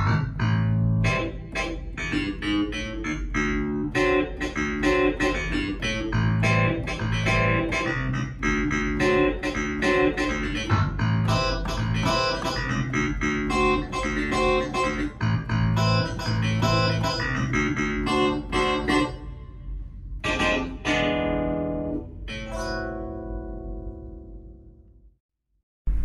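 Clavinet voice of a Pearl River PRK300 digital piano: a busy, fast passage of short, plucky notes over a pulsing bass line. Near the end come two separate chords that ring and fade away.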